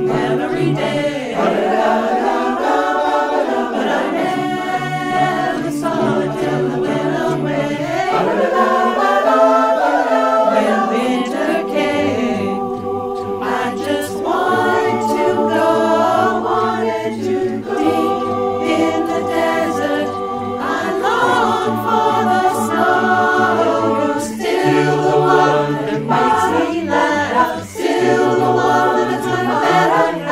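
A barbershop chorus singing a cappella in close harmony, several voice parts holding long chords that change every second or two.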